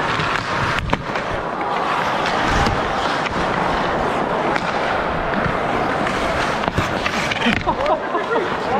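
Ice hockey play heard close up at ice level: skate blades scraping and carving the ice in a steady rasping noise, with a few sharp knocks of sticks or puck, over the hum of an arena crowd. A voice comes in near the end.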